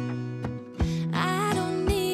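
Background music: a country-style song with strummed acoustic guitar and a voice singing from about a second in.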